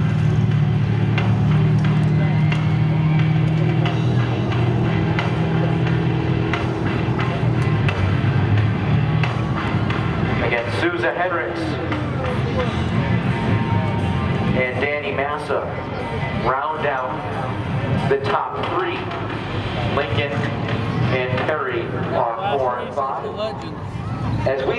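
Pure stock race car's engine running steadily at low speed on its victory lap. It is loudest for the first ten seconds or so, then fades under a voice and music.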